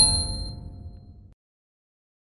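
A bright electronic ding, the closing hit of an intro sting, ringing briefly over a low rumble that fades out within about a second and a half.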